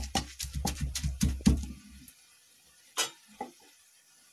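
Wooden pestle pounding a wet spice paste of chillies, ginger and seeds in a stone mortar, about five strikes a second with a dull thud each time, stopping about two seconds in. Two short knocks follow near the end.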